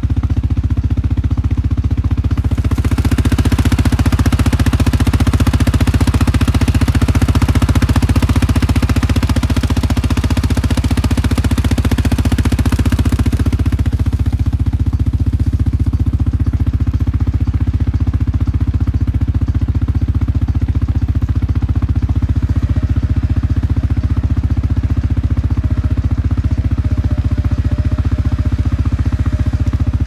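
ATV engine idling steadily close by. A louder rushing noise lies over it from about three to fourteen seconds in.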